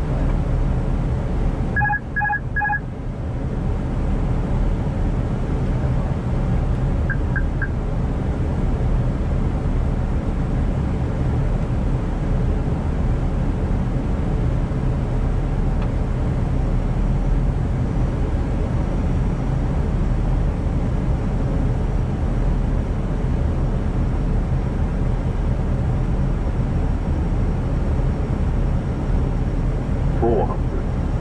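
Steady rush of airflow and engine noise on the flight deck of an Airbus A320 on approach. About two seconds in, three short electronic beeps sound in quick succession, and a fainter triple tone follows around seven seconds in.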